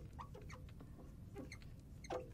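Marker squeaking on a glass lightboard while writing a word: a string of short, faint squeaks, some sliding up or down in pitch.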